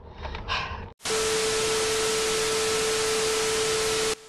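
Television static: a loud, even hiss with a steady tone beneath it. It starts suddenly about a second in and holds unchanged.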